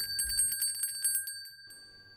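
A bell ringing in a fast trill, a sound effect that stands for a ring; it fades out about a second and a half in.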